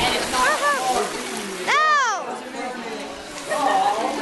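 Water splashing and sloshing as people move about in a swimming pool, with voices calling out over it. The loudest sound is a single high call that rises and falls, about two seconds in, after two shorter calls near the start.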